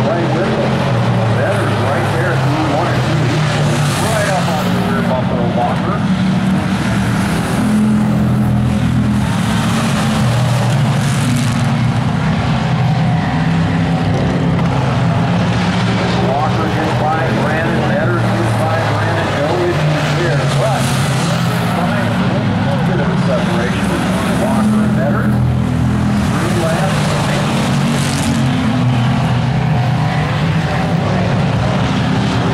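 A pack of Hobby Stock race cars' engines running hard around a short oval track. The engine pitch keeps rising and falling as the cars accelerate down the straights and back off into the turns.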